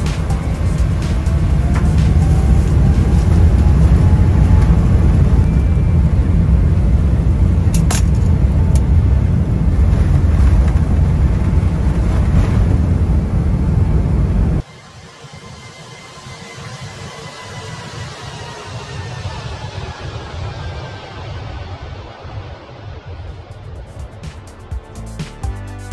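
Cabin noise of a Boeing 777-300ER on its takeoff roll: a loud, heavy rumble from the engines and runway, under music. About fifteen seconds in the rumble cuts off suddenly, leaving quieter music.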